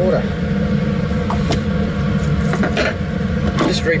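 Blower of a laminar flow cabinet running with a steady low hum, with a few light clicks and taps from metal tweezers and glass jars being handled.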